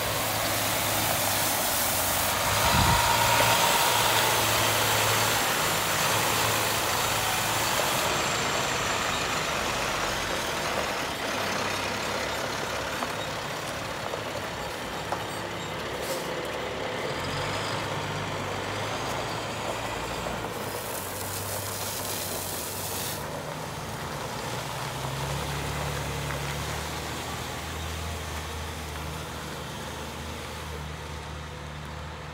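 Diesel engine of a 2009 International 7400 6x6 water truck running as it moves, under a loud hiss of water jetting from its spray heads onto the ground. The hiss is strongest for the first several seconds, fades, and comes back briefly about two-thirds of the way through.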